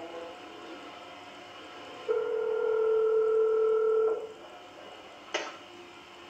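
Push-button telephone giving a steady tone held for about two seconds, starting about two seconds in, then a single click about a second after it ends.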